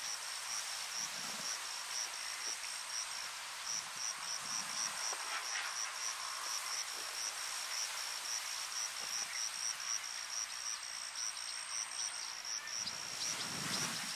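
An insect chirping steadily in a high-pitched, even rhythm of about three chirps a second, with a thin steady high whine above it.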